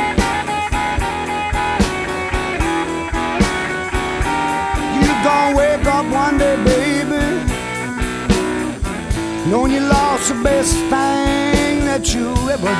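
Modern electric blues band recording: electric guitar playing bending lead lines over a steady drum beat and bass.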